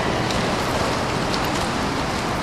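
Steady splashing and rushing water noise in an indoor swimming pool as a swimmer swims front crawl.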